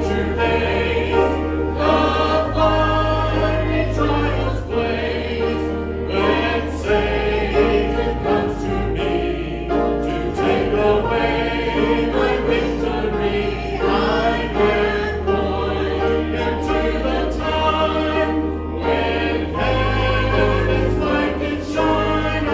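A gospel hymn sung with instrumental accompaniment, the voices carried over a bass line that moves in long held notes, changing every couple of seconds.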